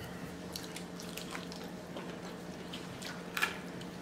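Close-miked eating sounds: scattered small wet clicks of chewing and a spoon working in a side cup of red beans and rice, with one slightly louder clack about three and a half seconds in. A faint steady hum runs underneath.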